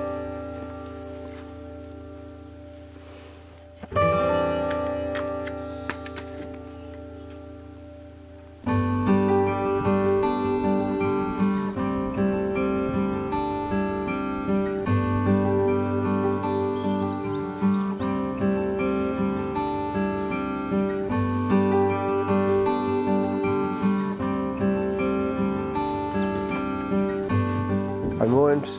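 Acoustic guitar music. A strummed chord rings and fades, a second chord is struck about four seconds in and left to ring, and then a steady picked pattern starts about nine seconds in.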